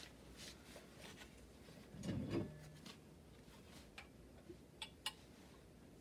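Faint handling sounds as a plastic cup and a plastic sports bottle are picked up to drink: a soft low thump about two seconds in, then a few light clicks near the end.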